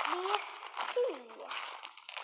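Wrapping paper crinkling in short crackly bursts as a wrapped book is unwrapped by hand, with a few spoken words over it.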